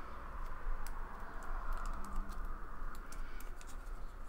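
A trading card slid out of a clear plastic sleeve and handled: a scatter of light clicks and plastic rustles over a steady hiss.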